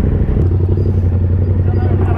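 Motorcycle engine idling with a steady low drone that grows a little stronger about half a second in.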